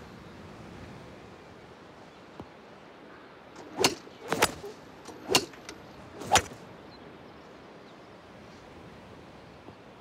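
A faint steady outdoor background with a run of sharp knocks about halfway through, four loud ones roughly a second apart and a few softer ones among them.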